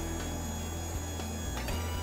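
Electric drive of a battery transfer cart running steadily with a low hum as it pulls a forklift battery across rollers onto the cart.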